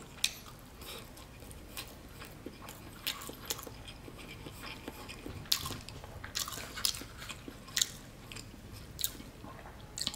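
Close-miked chewing of a mouthful of fried rice, with scattered short sharp clicks and scrapes of a metal fork against an aluminium foil pan, more frequent in the second half.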